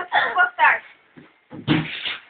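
A young voice speaking briefly, then a short dull thump near the end as a large white box is handled and tipped.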